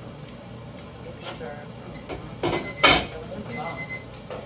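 Kitchen cookware clanking: two sharp knocks about two and a half and three seconds in, the second the louder. A brief metallic ring follows them.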